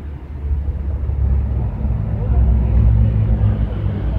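Low engine rumble of a motor vehicle passing nearby, building up about half a second in and loudest around three seconds.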